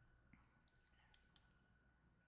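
Near silence: room tone with a few very faint clicks.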